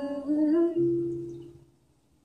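A young woman's voice singing the last notes of a song, then holding a single hummed note for about a second that fades out near the end.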